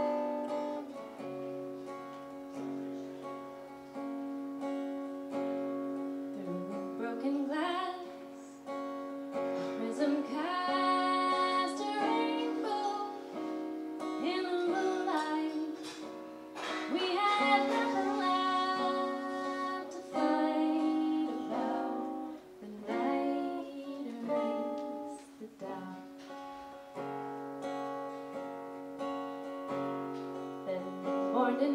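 A woman singing with strummed acoustic guitar. The guitar plays alone for the first few seconds, and the voice comes in about six seconds in, in several sung phrases.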